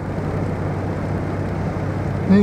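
Car engine idling steadily with the car at a standstill in traffic, heard from inside the cabin as an even low hum.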